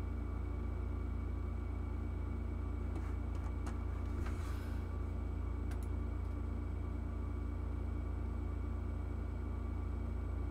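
Steady low hum and background noise of a computer setup picked up by a desk microphone, with a few faint computer-mouse clicks.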